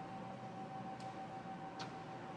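A steady high-pitched tone over faint background noise, with two faint short ticks, one about a second in and one near the end.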